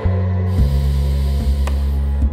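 Slow meditative background music: a steady low drone with a soft beat about every 0.7 seconds. About half a second in, a long airy breath sound joins it, part of the paced breathing of the routine.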